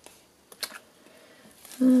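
A few light clicks and taps of paper and card being handled on a craft desk, mostly in the first second.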